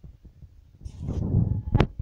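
Low rumbling thumps of a phone's microphone being handled as the phone is carried and turned, louder in the second half, with a sharp click near the end.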